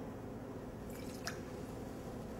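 Fresh lemon juice being poured into a jigger and tipped into a mixing glass: a faint dripping and trickling of liquid about a second in, over a steady low room hum.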